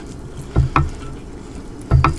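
A few soft knocks of a metal fork against a plate as it works at a sticky dumpling wrapper: two close together about half a second in and one near the end, over a low background hum.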